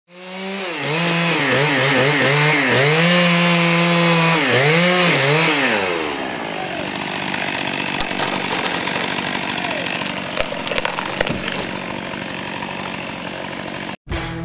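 Two-stroke chainsaw revving up and down several times, then running under load with a rougher, steadier sound as it cuts into a pine trunk, with a few sharp cracks in the second half.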